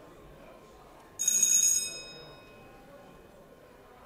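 A bell rings once about a second in, a short bright metallic ring that fades out within a second, over a low murmur of voices in a large chamber.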